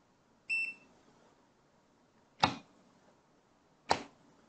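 A short electronic beep from a KKM828 graphical multimeter's key press about half a second in. It is followed by two sharp clicks about a second and a half apart as a magnetic contactor, fitted with a surge-suppressing varistor, is energised from a pushbutton and then de-energised.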